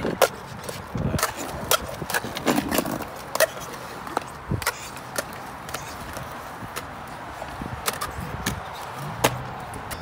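Skateboard wheels rolling over concrete, with a dozen or so sharp, irregular clacks and knocks from the board hitting the ground.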